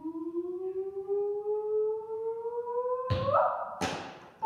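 A balloon squealing as air is let out through its stretched neck. One long tone climbs slowly, then leaps higher about three seconds in, and two sharp snaps follow near the end.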